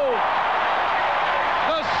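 Large stadium crowd cheering after a home touchdown, a steady even din between the announcer's call and his next words.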